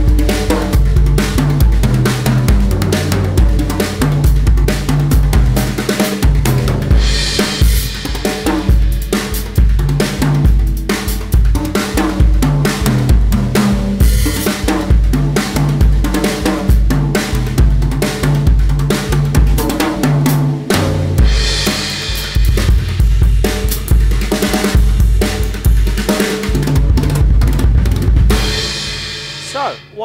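Drum kit playing a steady rock beat on bass drum and snare, with three tom-toms played in melodic patterns over it that step between their pitches. Cymbal crashes come in a few times, and the playing stops near the end.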